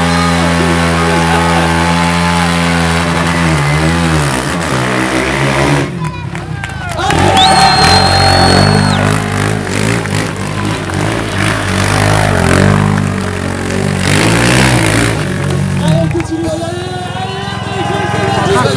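Sport quad bike engine held at high revs and then revved up and down repeatedly while it spins its rear tyres in a smoky burnout, mixed with PA music and announcer speech.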